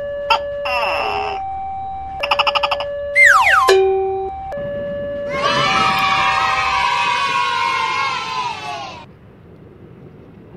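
Cartoon sound effects laid over the edit: two steady tones alternating, broken by a quick warbling trill and a fast falling whistle. Then comes a long scream-like cry whose pitch sags slowly and which stops about nine seconds in, leaving only faint outdoor background.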